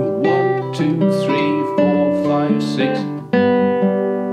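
Nylon-string classical guitar fingerpicked slowly, thumb and fingers picking chord shapes note by note in a quaver and semiquaver rhythm, the notes ringing over one another as the chords change.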